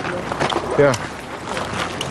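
Speech: one short spoken "Ja" about a second in, over steady background noise.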